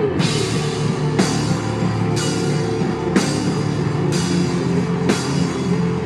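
A heavy rock band playing live: the drum kit strikes a cymbal about once a second over sustained low guitar and bass notes.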